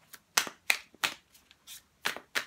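A deck of tarot cards being shuffled by hand: a run of short, sharp papery snaps, about two or three a second.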